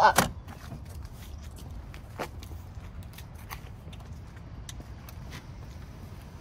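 Folding third-row seatback of a 2021 Toyota 4Runner being pulled upright by its release lever: a sharp clunk just after the start, then a few faint clicks and rustles as the seat is set in place.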